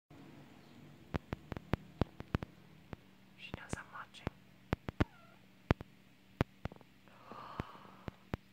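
Soft whispering with irregular sharp clicks, over a faint steady low hum.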